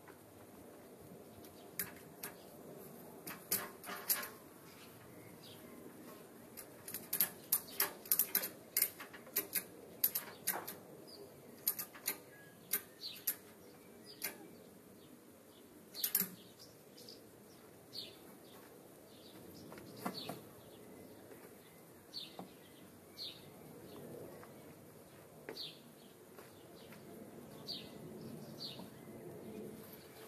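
Ratchet strap being cranked to draw a tractor's engine and transmission halves apart: the metal ratchet clicks in irregular runs, densest from about seven to thirteen seconds in, then in scattered single clicks, heard from a distance.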